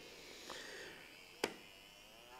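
Small electric motor running faintly at low voltage, slowly turning a 3D-printed PLA mechanism, with a single sharp click about one and a half seconds in.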